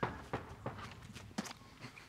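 Footsteps and a few soft, scattered knocks from a performer moving across a stage, the clearest thud about one and a half seconds in.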